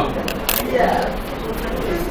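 Quiet voices murmuring in a classroom, with two short sharp clicks early on.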